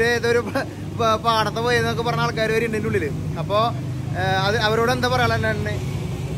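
A man talking over the steady low hum of street traffic and motorcycle taxis.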